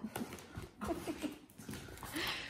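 Cardboard parcel being handled and cut open with a box cutter: scattered rustles and a few sharp knocks of the cardboard.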